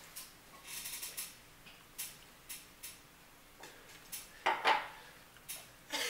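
A string of short clicks and knocks from a drinking glass being handled while someone drinks from it and sets it back down on the tabletop. The loudest knock comes about four and a half seconds in.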